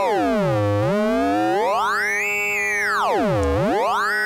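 Synthesizer tone from a Fonitronik MH31 voltage-controlled modulator, a ring-modulator type, mixing a square wave with a triangle-like wave. One oscillator's frequency is swept by hand, so a cluster of pitches glides down to a low buzz, up high, down low again and starts rising near the end, while other tones hold steady underneath.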